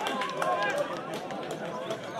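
Several men's voices shouting and calling out across an open football pitch, overlapping, with a few scattered knocks.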